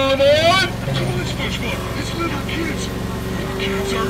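A ride train running with a steady low hum. A high, rising cry ends about half a second in, and scattered voices sound over the hum.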